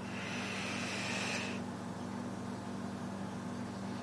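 Draw through a Dark Horse clone rebuildable dripping atomizer with its coil firing at about 100 watts: a hissing sizzle of air and vaporising e-liquid for about a second and a half, then it stops. A steady low hum runs underneath.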